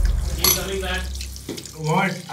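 Water running onto tiles, with a low music drone that fades out about a second and a half in. A voice starts just before the end.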